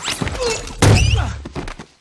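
A single heavy thud a little under a second in, with a deep low rumble dying away over the next half second.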